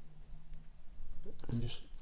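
A few faint clicks from a Worx mini circular saw's depth-adjustment lever being set and locked by hand. A man starts speaking near the end.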